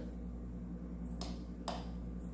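Two faint light clicks about half a second apart, a little past the middle, from a table knife and plate being handled, over a steady low hum.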